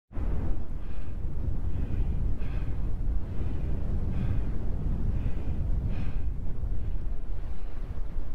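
Strong wind buffeting the microphone with a steady low rumble. Faint footsteps crunch on a stony, shaly path about once a second.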